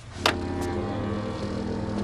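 A sharp click, then an engine running with a steady, even hum.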